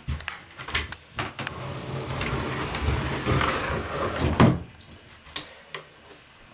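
Small wooden cabinet being handled and shifted. There are a few knocks at first, then a long scraping drag of about three seconds that grows louder and stops sharply.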